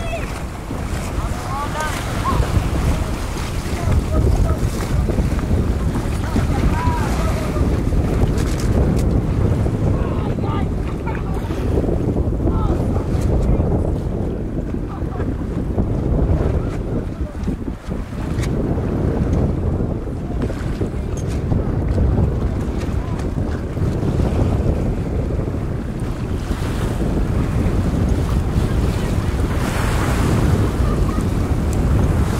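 Wind buffeting the microphone over the rush and slap of choppy sea water, recorded from aboard a boat, steady throughout with a brief lull about two-thirds of the way in.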